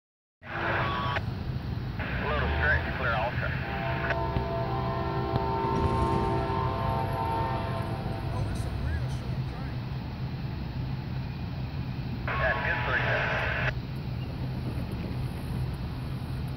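Distant diesel locomotive horn sounding one steady chord for about four seconds, over a continuous low rumble.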